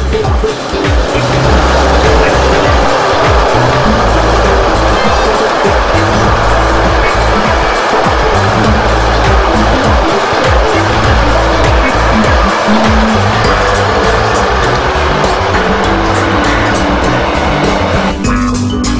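Background music with a steady, stepping bass line over the rolling noise of a long container freight train passing close by, a dense even rumble of wheels on rail that builds about a second in and holds as the wagons go past.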